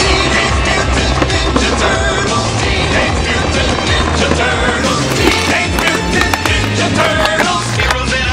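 Background music with a steady bass line, over a skateboard on concrete: its wheels rolling and short clacks of the board, more of them in the second half.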